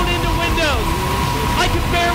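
Large wind-tunnel fans driving air at category-two hurricane speed, about 100 mph: loud, deep wind noise blasting the microphone, with a steady high whine over it. A voice is raised over the wind.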